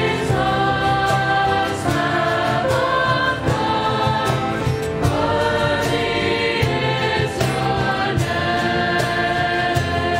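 Mixed choir of teenage voices singing a worship song together, with instrumental accompaniment: a sustained bass line and a light, steady beat.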